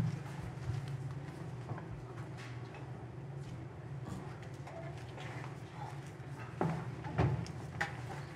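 Quiet theatre room tone with a steady low hum, scattered soft footsteps and small knocks from a person walking across the stage, and two louder thumps near the end.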